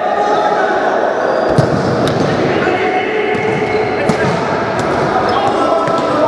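Futsal game in a sports hall: steady chatter and shouts of spectators and players, with a few sharp knocks of the ball on the hard floor, the first about a second and a half in.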